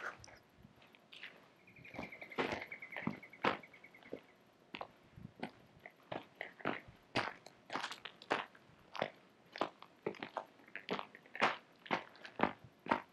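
A hiker's footsteps crunching on a gravel and stone path, about two steps a second. About two seconds in, a bird gives a rapid trilled call for a couple of seconds.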